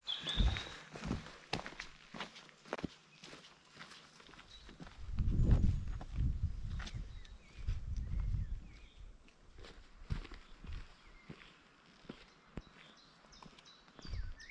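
Footsteps of hikers walking on a dirt and stony forest trail: a run of short, light steps, with a louder low rumble about five to six seconds in.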